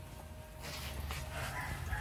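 A faint animal call over a low, steady rumble.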